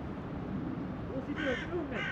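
A bird calling twice in quick succession near the end, over faint distant voices.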